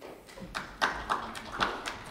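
A few faint, irregular taps and clicks over a low room rumble in a large hearing room.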